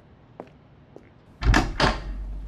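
A few faint steps, then a door slammed shut about one and a half seconds in: two heavy bangs close together, with a low boom that lingers.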